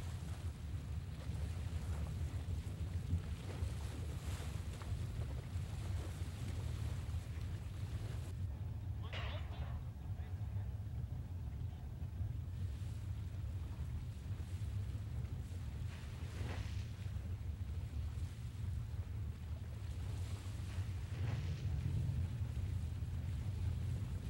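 Steady low rumble of boat motors idling with wind over open water. A short higher sound rises and falls about nine seconds in.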